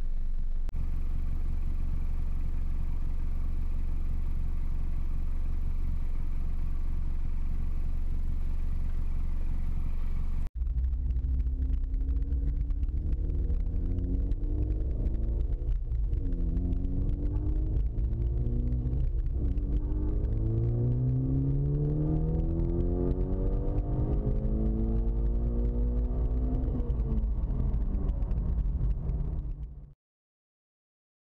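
Mitsubishi Lancer Evolution X's turbocharged four-cylinder on E85, idling steadily at first. After a cut, it is heard from inside the cabin accelerating hard through the gears, its pitch rising and breaking off twice at shifts before one long climb. It cuts off abruptly near the end.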